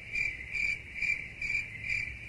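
Crickets chirping in a steady, even pulse, about three chirps a second.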